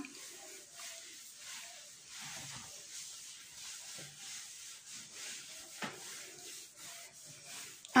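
Cloth rubbing over a wooden wardrobe door, a faint uneven rubbing in repeated strokes as sprayed-on furniture polish is buffed to a shine.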